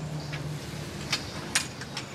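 Steady outdoor background noise with a faint low hum in the first second and two soft clicks.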